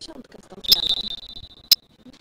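Referee's whistle blown once in a sports hall: a steady high-pitched blast lasting about a second, with a sharp crack at its start and another at its end.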